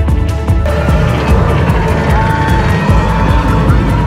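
Background music playing over the rumble of a roller coaster train running along its track.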